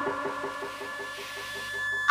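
Quiet instrumental accompaniment: a held note that pulses about nine times a second over a thin steady high tone, with no drum strokes.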